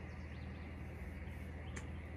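Steady receiver hiss (band noise) from a Xiegu X6100 HF transceiver's speaker, cut off sharply at the top like audio through a narrow voice filter, with a low hum under it. A few short chirps from small birds come through above it.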